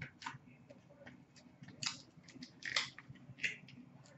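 Hands handling a trading-card pack wrapper, making short crinkling, rustling sounds about four times.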